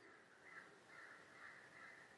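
Near silence: faint room tone in a pause between spoken sentences, with a few very faint soft sounds about every half second.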